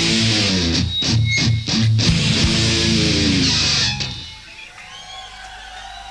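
Live rock band with electric guitar and drums playing the closing stop-start chords of a song, cutting off about four seconds in. Quieter room sound follows.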